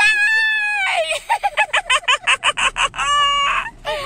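A woman's high-pitched squeal, then a run of quick cackling laughter, ending in another short held squeal about three seconds in.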